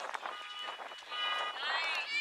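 High-pitched voices shouting long, held calls, with the pitch wavering and bending near the end.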